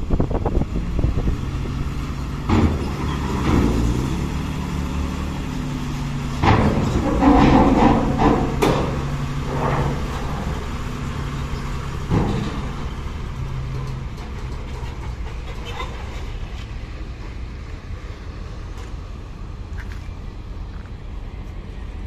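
Loaded Mitsubishi Fuso diesel cargo truck driving up a steel loading ramp into a ferry, its engine running under load. Loud clanks and bangs as it crosses the ramp plates come between about two and twelve seconds in, loudest around the middle; after that the engine settles to a steadier rumble that slowly fades.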